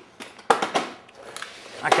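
A single sharp knock about half a second in, from a tool being handled at the workbench, followed by faint handling noise. A man starts speaking near the end.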